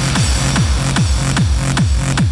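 Fast hard-trance dance music from a DJ mix: a kick drum on every beat, about two and a half beats a second, over a steady bass note and hi-hats.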